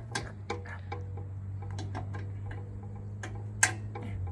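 Irregular clicks and taps of a hand tool working on the steel fender bracket of an old boat trailer, several a second, with one sharper click near the end, over a steady low hum.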